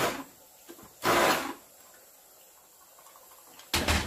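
Electric stick blender grinding cooked meat in a pressure-cooker pot. Its running noise stops just after the start, and it gives one more short burst of about half a second, about a second in.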